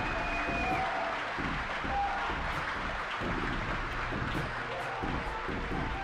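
Crowd applauding and cheering in a hall after shouted chants, with music playing underneath.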